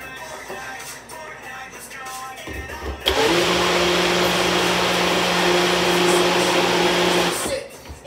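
Ninja personal blender's motor blending a cup of liquid, starting about three seconds in with a steady hum at constant pitch and cutting off shortly before the end.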